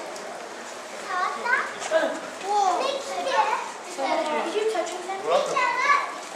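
Several children talking and exclaiming at once in high voices, starting about a second in.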